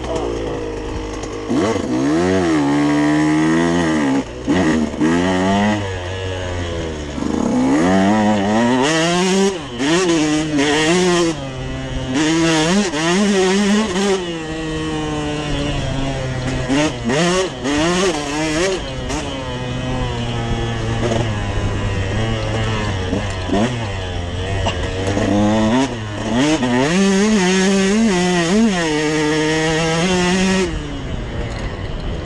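Dirt bike engine being ridden hard, its revs climbing and dropping over and over as the throttle is opened and rolled off, with a few brief dips where the throttle closes.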